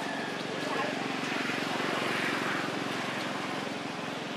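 Steady outdoor background of indistinct voices over a low motor hum, swelling slightly in the middle; no distinct animal call or impact stands out.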